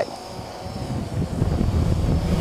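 Blade 350 QX quadcopter in flight at a distance, a faint steady whine from its motors and propellers. Wind rumbles on the microphone, growing louder a little over a second in.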